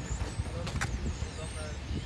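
Outdoor city street background: a steady low rumble, with a short click a little under a second in.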